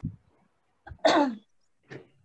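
A woman clears her throat once about a second in, a short sound that falls in pitch.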